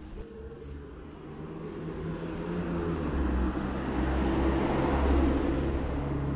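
A car on the road beside the pavement: engine and tyre noise growing louder over the first few seconds, loudest about five seconds in as it comes close.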